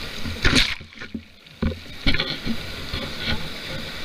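Sea water rushing and splashing close to the camera as a board skims through choppy waves, with wind rumbling on the microphone. The splashing comes in sudden surges and goes muffled and quieter for about half a second a second in.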